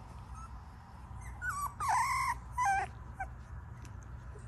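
Newborn Pomsky puppies squeaking as they sleep: a few short, high squeaks starting about a second in, the loudest and longest about halfway through, then one more brief squeak.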